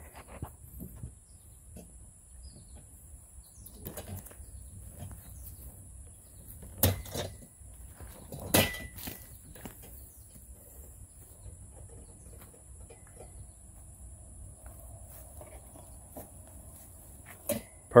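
Metal legs of a deer feeder knocking and scraping as the feeder is tipped over and stood upright. Two sharp knocks about a second and a half apart, each with a brief metallic ring, stand out among softer scuffs and clicks.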